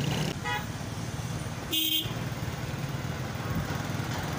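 Road traffic running with a steady low rumble. A brief faint vehicle horn toots about half a second in, and a louder, short horn toot comes about two seconds in.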